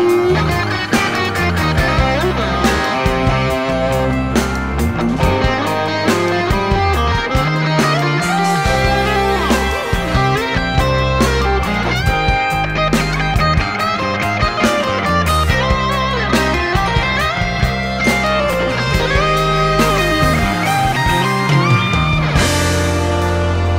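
Instrumental progressive rock passage: an electric guitar plays a melodic lead with bending notes over a moving bass line and drums.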